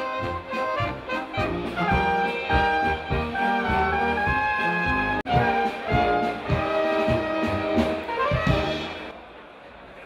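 German brass band with clarinets, tuba, trumpets and drum kit playing, the notes held over a steady drum beat. The music breaks off for an instant about halfway, then fades down near the end.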